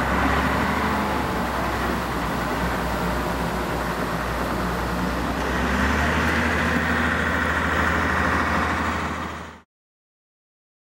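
A heavy engine running steadily as a low hum under a wash of outdoor noise. It cuts off abruptly near the end.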